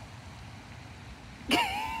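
A faint tap of a putter striking a golf ball over a low outdoor rumble. About a second and a half later comes a sudden loud, high-pitched vocal exclamation, the start of laughter at the missed putt.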